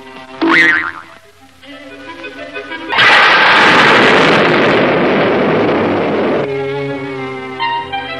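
Cartoon sound effects over cartoon background music. A springy boing-like twang comes about half a second in as the slingshot is drawn and let go. About three seconds in a loud, sudden explosion-like blast follows, which eases off slightly and stops about three and a half seconds later before the music carries on.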